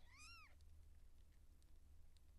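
Newborn Siamese kitten giving one short, high-pitched mew that rises and then falls in pitch.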